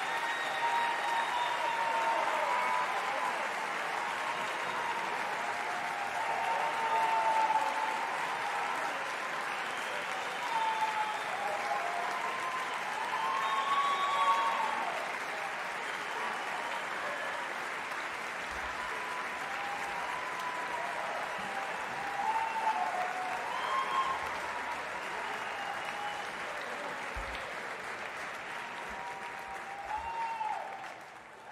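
A large audience applauding and cheering, dense steady clapping with many whoops and shouts over it, easing off a little near the end.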